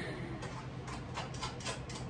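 A series of light, irregular clicks over a steady low hum.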